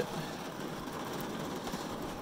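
Steady noise of rain falling on the car's roof, heard from inside the stripped-out cabin.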